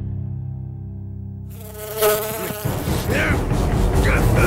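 Housefly buzzing close by, starting about a second and a half in, its pitch swooping up and down as it darts around.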